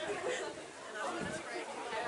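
Indistinct shouting and chatter from rugby players and sideline spectators, several voices overlapping.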